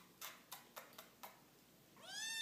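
Faint ticking of a kitten's paws and claws on a hard wood-look floor as it walks, about four light clicks a second, stopping a little past halfway through.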